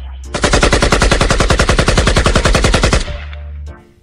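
Machine-gun sound effect, as used in dancehall mixtapes: one rapid, even burst of shots lasting about two and a half seconds, with a short fading tail.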